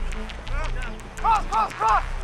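Three quick, loud shouted calls from a football player in the second half, with fainter voices just before. Under them run a steady low rumble and scattered light clicks.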